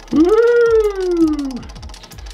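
A high voice gives one long drawn-out "ooooh" that rises quickly and then slowly falls in pitch. It sounds over a quick run of light ticks from the spinning prize-wheel app on the iPad.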